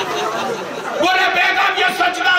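Mostly speech: a blurred mix of several voices at first, then a man's voice speaking loudly into a microphone from about a second in.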